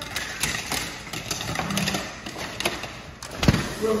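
Sliding glass patio door being handled and rolled open along its track, a rumble with clicks and rattles, and a loud thud about three and a half seconds in.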